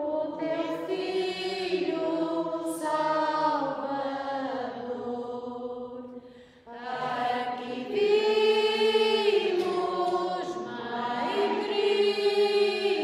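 A hymn sung in long held phrases, with a short break about six seconds in before the next phrase starts.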